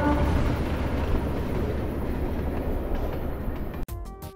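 Train running along the rails: a steady low rumble that slowly fades, cut off abruptly near the end.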